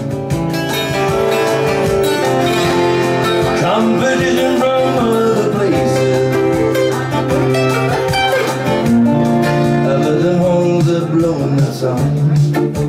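Twelve-string acoustic guitar played in a live set, a run of picked notes and strummed chords that carries on without a break.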